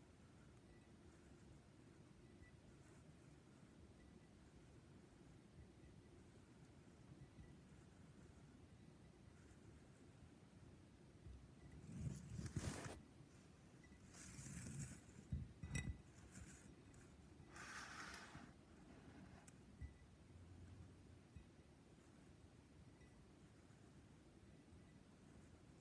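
Near-silent room tone. About halfway through, a glass tumbler is turned on the tabletop, its base scraping in three short spells, with one small clink in the middle.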